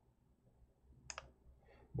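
A single quick computer mouse click about a second in, otherwise very quiet.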